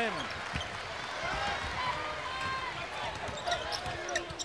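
Courtside game sound of a basketball game in an arena: steady crowd noise, with a ball dribbling and faint short sneaker squeaks on the hardwood floor.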